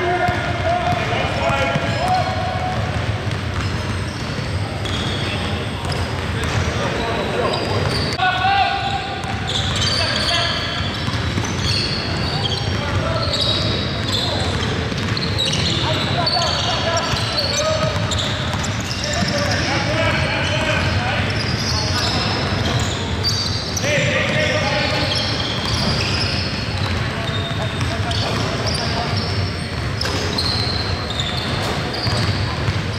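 Basketball game on a hardwood gym court: the ball bouncing as players dribble, sneakers squeaking in short high chirps, and players calling out, all echoing around the large gym.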